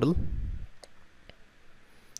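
A few faint single computer mouse clicks, one about a second in and another shortly after.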